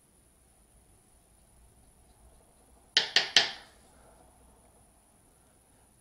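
Three quick sharp clicks of a makeup brush and eyeshadow palette being handled, about halfway through, the last one trailing off briefly. The room is otherwise near-silent.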